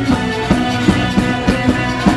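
Live soca band playing a steady, loud drum beat with guitar and bass underneath, between sung lines.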